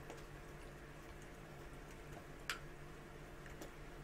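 Small screwdriver turning a tiny screw into a plastic model part: faint ticks, with one sharper click about two and a half seconds in, over a low steady hum.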